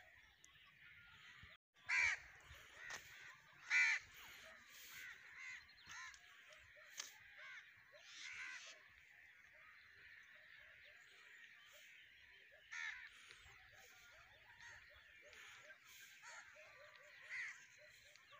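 A large flock of crows calling at their evening roost: a continuous chorus of many cawing birds, with a few louder, closer caws standing out about two and four seconds in and again near the end.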